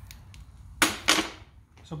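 Ridgid 811A metal die head set down onto the threading machine's carriage: two sharp metal knocks about a third of a second apart, a little before halfway through.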